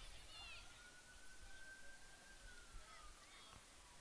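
Near silence: faint outdoor field ambience. A faint long tone begins just after the start, rises a little, then slowly falls, and a few short chirps come early and again near the end.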